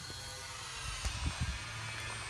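Faint steady low outdoor hum, with a few soft low thumps about a second in from the handheld phone being carried while walking.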